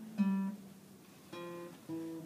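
Nylon-string classical guitar played slowly, one note at a time, as in scale practice: a plucked note rings and fades, then two more single notes follow close together near the end.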